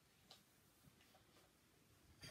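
Near silence: room tone with a few faint, irregular ticks.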